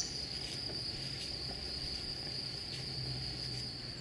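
A cricket's continuous high-pitched trill, held steady on one note.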